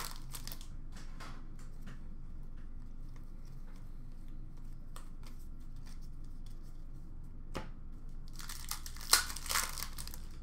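A trading-card pack's wrapper being handled and torn open: faint crinkles and ticks, then a short burst of louder tearing and crinkling near the end.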